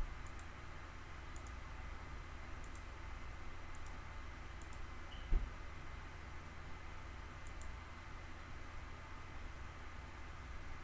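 Faint computer mouse clicks, a paired click every second or so with a pause in the middle, over a low steady hum, with one dull thump about five seconds in.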